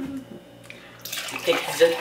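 Water being poured from a plastic pitcher into a drinking glass, starting suddenly about a second in.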